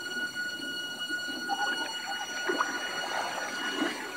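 Film soundtrack of an underwater scene: several steady, sustained high tones over a muffled underwater wash, with a few faint knocks and short glides.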